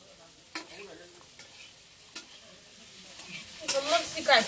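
Metal spatula stirring food frying in a wok (kadhai) on a clay stove: a soft sizzle, with sharp clinks about half a second and two seconds in. The scraping and clatter grow louder near the end.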